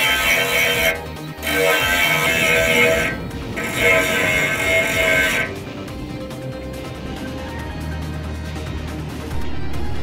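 A small 12-volt grinder sharpening the teeth of a circular sawmill blade, grinding in three bursts with short breaks between, then stopping about five and a half seconds in.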